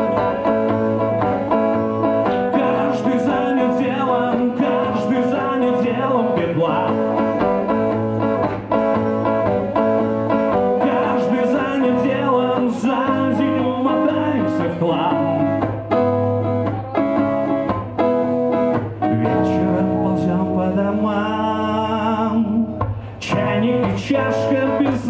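A man singing a bard-style song while strumming an electric guitar, with no other instruments.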